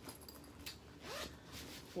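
Zipper of a JanSport backpack pocket being pulled open in a few short strokes.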